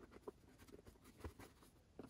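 Near silence with faint handling noises: light rustles of a cotton rope and a soft knock a little past halfway as hands move over a rope-tied cardboard box.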